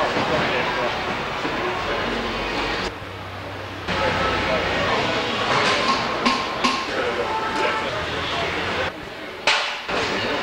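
Busy warehouse background noise: indistinct chatter and a steady low hum, with several sharp clacks about six seconds in and a loud click near the end. The sound breaks off briefly twice, about three seconds in and again near the end.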